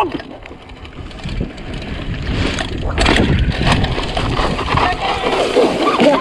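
Mountain bike rolling over a rough dirt trail: tyre and frame rattle noise with wind on the microphone, quieter at first and louder from a sharp knock about three seconds in.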